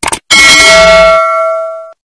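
A short click sound effect, then a single bell chime sound effect ringing with several steady tones, fading out and stopping just before the end.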